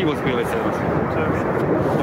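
A man's voice in Ukrainian, pointing out the glowing object in the sky as a bomb, over a steady, loud rushing noise.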